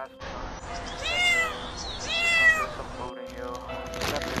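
A cat meowing twice, two drawn-out calls that rise and fall in pitch, about a second apart.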